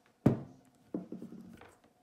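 A cast-iron Grundfos UPS15-58F circulator pump set down on a tabletop: one sharp thunk, followed by a fainter sound about a second later.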